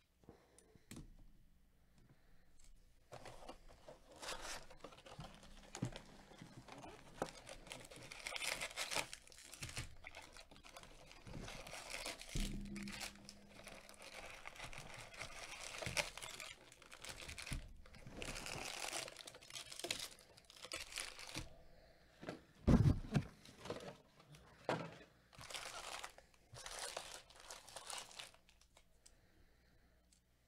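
Gloved hands tearing open a cardboard hobby box of 2020 Bowman Draft Super Jumbo baseball cards and pulling out its foil-wrapped packs: steady rustling, tearing and crinkling. A low thump about 23 seconds in is the loudest sound.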